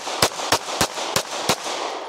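Semi-automatic pistol fired rapidly: five shots about a third of a second apart, each trailing off in an echo.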